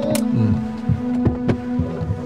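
Dramatic background score: a sustained drone chord with a low, heartbeat-like thudding pulse about twice a second.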